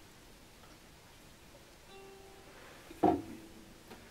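Quiet handling of string instruments: a faint plucked note sounds about halfway through as the ukulele is put down, then about three seconds in a knock and the strings of an acoustic guitar ring briefly as it is grabbed and lifted.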